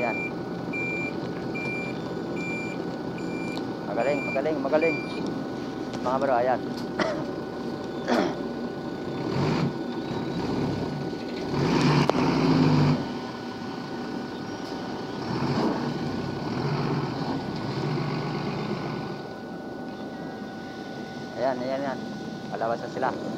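Refrigerated box truck manoeuvring, its diesel engine running, with its reversing beeper sounding in a steady repeating beep for about the first five seconds. The engine noise surges louder about twelve seconds in.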